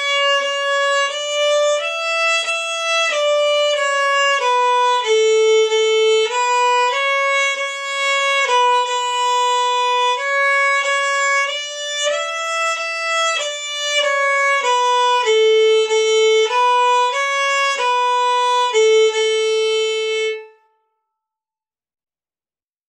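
Violin bowed in a slow, simple stepwise melody of single notes on the A string, about one note a second, each evenly held. It ends on a long held low note shortly before silence.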